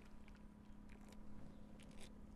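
Near silence: faint swallowing and sipping sounds from men drinking beer from cans, with a few soft clicks over a low steady hum.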